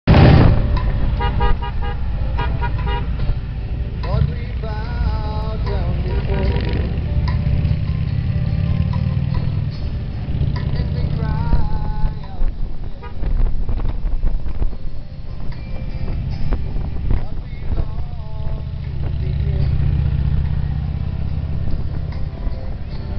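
A motorcycle riding along, heard from the bike: steady engine and wind noise, with a run of short horn toots early on and raised voices at the roadside a few times.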